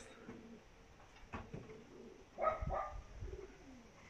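Domestic pigeons cooing faintly in short calls, one falling in pitch near the end, with a soft knock or two.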